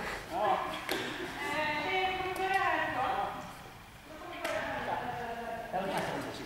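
People talking in a large sports hall, their voices echoing, with a single light knock about a second in.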